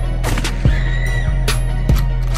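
Background music track: a beat of kick drum and hi-hat hits over a deep steady bass, with a high wavering tone that rises and falls briefly in the middle.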